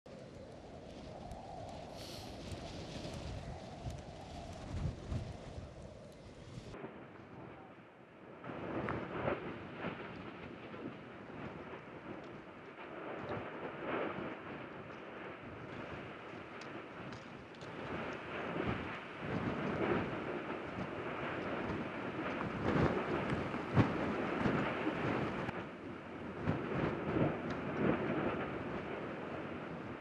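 Low rumble of a volcanic fissure eruption over a steady rushing noise, with irregular crackles and pops as lava spatters from the vent. The sound changes abruptly twice in the first third, at cuts between shots.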